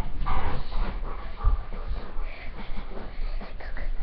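A dog whimpering and panting during play, with scuffling movement sounds.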